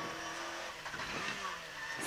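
Peugeot 106 N1 rally car's engine heard faintly inside the cabin, a steady drone whose pitch wavers slightly while the car drives the stage.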